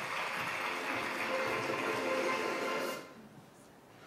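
Audience applause at the end of a recorded talk, steady and dense, cut off abruptly about three seconds in.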